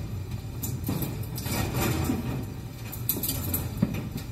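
Clothes hangers clicking and garments rustling as a wardrobe closet is rummaged through, with scattered short knocks over a low steady rumble.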